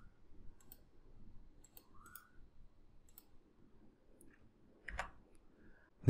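Near silence broken by a few faint, scattered clicks, with one louder click about five seconds in.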